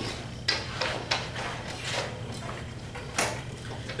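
Scattered light clicks and knocks of people handling things, about five in all, the loudest a little after three seconds in, over a steady low room hum.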